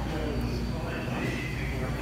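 Supermarket background sound: a steady low hum with faint, indistinct voices, and a faint high tone in the second half.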